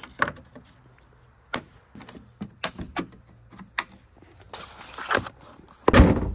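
Metal sockets clicking and knocking as they are put back into a plastic socket-set case, a few sharp clicks spread over several seconds. Near the end the car's hood is slammed shut with one loud, deep thud.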